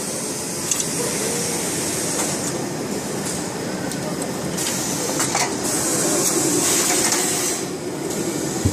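Steady running noise of garment-finishing machinery, with voices chattering underneath and a few sharp clicks. Two stretches of stronger high hiss come in the second half.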